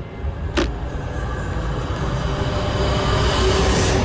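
Dramatic suspense riser: a rush of noise that swells steadily for about three seconds over a low rumbling drone and cuts off sharply at its peak, with a single click about half a second in.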